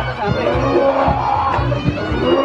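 Reog Ponorogo gamelan accompaniment: a wavering, reedy slompret melody over steady, repeated low drum and gong beats.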